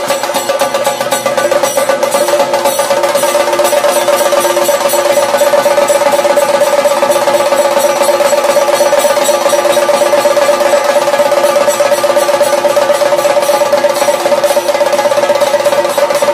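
Chenda drums beaten with sticks in a fast, dense roll to accompany a Theyyam, with a steady held note sounding over the drumming.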